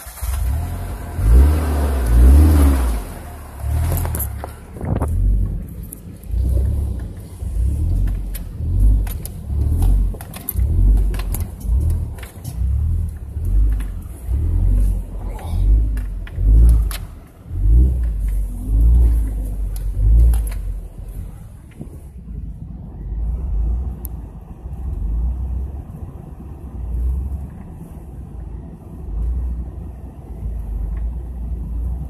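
Four-wheel-drive vehicle's engine working up a rocky trail. The engine note swells and eases about once a second, with frequent knocks and rattles as the vehicle bounces over rocks. From about two-thirds through it settles into a steadier, quieter run.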